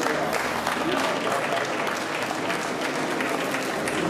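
Audience applauding steadily, with crowd voices mixed in.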